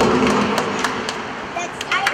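Ice hockey sticks clacking on the puck and ice during a faceoff and the play after it, a few sharp clicks, over spectators' chatter in the rink.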